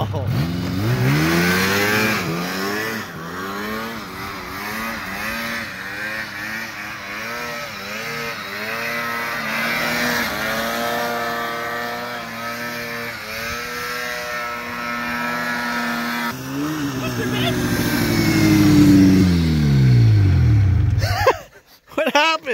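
A Phazer snowmobile's engine revs up and down repeatedly as the sled is ridden through deep snow. Near the end it grows to its loudest, then drops in pitch and cuts off.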